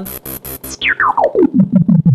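Distorted analog-style synth bass from the Pro-53 software synthesizer playing a fast run of repeated notes, about eight a second. Its filter cutoff is being turned down by a controller knob, so the tone sweeps from bright and buzzy to dull and dark over the second half.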